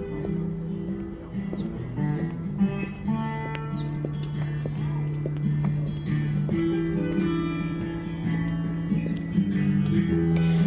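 Music with a plucked guitar, over long held low notes.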